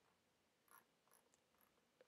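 Near silence: room tone, with one very faint click about three quarters of a second in.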